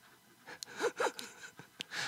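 A person's brief breathy vocal sounds, two quick falling notes like a short gasp, then a single sharp click near the end.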